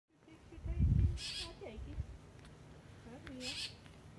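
Background birds calling: two short, buzzy high calls and a few low hooting notes that bend in pitch, with a low rumble about a second in.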